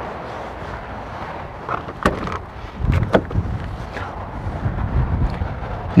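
Steady outdoor background noise, with two light knocks about two and three seconds in and an uneven low rumble through the second half.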